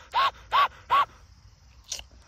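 Domestic duck panting like a dog: four quick, short breaths about a third of a second apart, each with a slight rise and fall in pitch.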